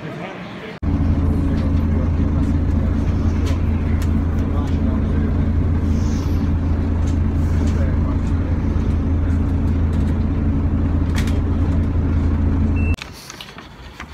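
Bus engine running with a loud, steady low drone, heard from inside the passenger cabin; it starts abruptly about a second in and cuts off about a second before the end.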